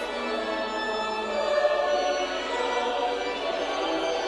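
A choir singing a slow liturgical hymn in long held notes, carried by the echo of a large cathedral.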